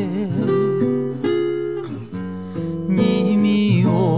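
A song playing: a singer's voice with wide vibrato over acoustic guitar, held notes in between.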